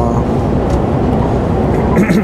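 Steady drone of a Mercedes-Benz truck cruising on a wet motorway, heard from inside the cab: engine and road noise.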